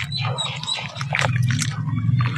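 Wet squelching and splashing of hands squeezing a lump of red clay slurry in a tub of muddy water, over a steady low hum.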